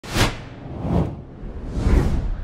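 Sound-effect whooshes, each with a deep boom under it, three in quick succession about a second apart; the first is the loudest.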